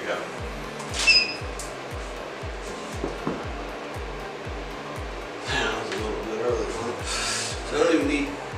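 Background music with a steady low beat. A short high beep about a second in, and brief hisses near the end.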